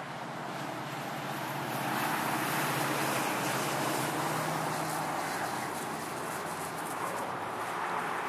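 A motor vehicle passing by: steady road noise that swells over the first few seconds and then slowly fades.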